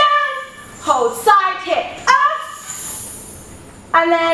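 A woman's wordless vocal sounds with sliding pitch: four short calls in the first two seconds or so, the last one trailing off.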